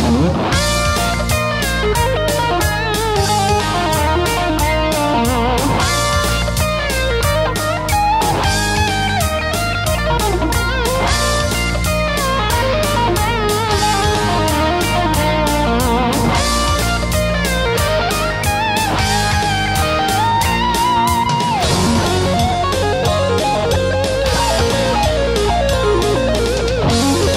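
Electric guitar played through a BOSS ME-70 multi-effects unit: a lead line with string bends and vibrato over a rock backing with a steady beat and bass.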